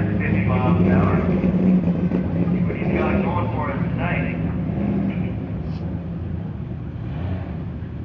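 Turbocharged 2JZ inline-six of a drag-race Toyota Supra running at low revs as the car creeps up to the start line after its burnout, a steady low drone that slowly fades. Voices talk close by.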